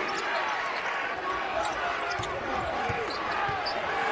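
Basketball being dribbled on a hardwood court, with a few low bounces in the second half, over steady arena crowd noise.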